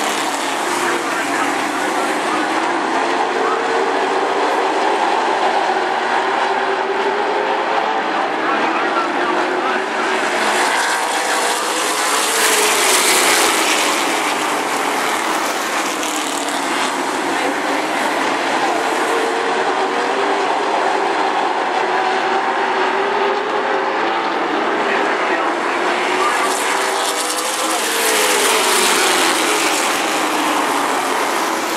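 A pack of late model stock cars racing, their V8 engines held at high revs, the pitch sweeping down as the cars go past. The field passes loudest twice, about twelve seconds in and again near the end.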